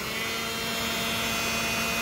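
Harbor Freight heat gun running on its high setting: the fan motor and the air it blows make a steady rushing noise with a low, steady motor hum.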